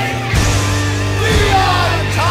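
Industrial punk/metal song: a man's half-sung, half-yelled vocal with wavering, gliding pitch over a steady heavy band backing of bass, guitars and drums.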